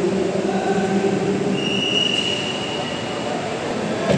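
Steady rumble and hum of idling cars and traffic at a busy curb, with a thin high-pitched whine in the middle.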